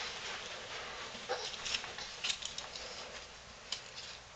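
A quiet room with a toddler's faint short grunts and small clicks and rustles of movement as she gets up from crawling to standing.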